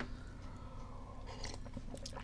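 Quiet background between phrases: a low, steady hum, with a faint soft noise about a second and a half in.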